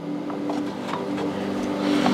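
Faint clicks and light metal scraping as the half of the Allison 250 C18's axial compressor case is worked loose and lifted off its rotor, over a steady low hum.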